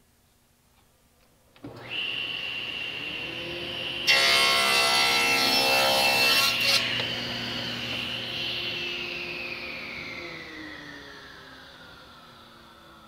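Table saw switched on about two seconds in, running with a steady high whine. For about three seconds it rips a thin strip off a board, much louder while the blade is in the wood. It then coasts down, the whine slowly falling in pitch and fading.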